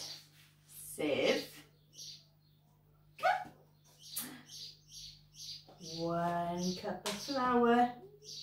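A voice making two long, drawn-out sounds in the last two seconds, over short high chirps that repeat a few times a second.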